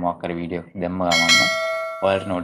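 Bell-chime sound effect of a subscribe-button animation's notification bell: a bright ding struck about halfway through, struck again a moment later, then ringing on and slowly fading. Speech comes before it.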